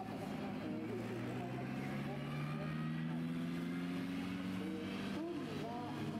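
Formula Regional single-seater race cars' engines running at low revs as they pull away down the pit lane, a steady drone that slowly rises in pitch. A voice talks over it, faint, around the start and again near the end.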